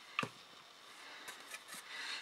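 Thin MDF craft pieces being handled: one light tap about a fifth of a second in, then faint rubbing and scraping of wood.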